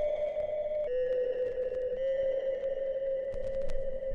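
Background music: a slow line of long held notes, each stepping to a new pitch about once a second.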